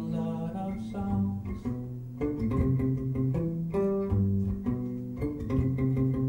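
Live band playing an instrumental passage: plucked guitar with a melody of held notes over it, changing about once a second.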